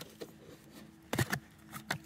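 Cardboard box lid being opened by hand: a few sharp taps and scrapes of cardboard as the tuck flap is pulled free and the lid lifted, clustered a little past the middle with a couple more near the end.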